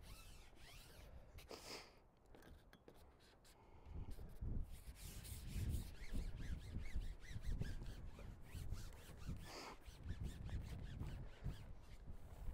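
Wind buffeting the microphone: a low, uneven rumble that starts about four seconds in and rises and falls in gusts.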